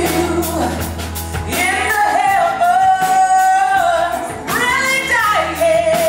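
Woman singing live with a rock band backing her, holding long sustained notes with vibrato.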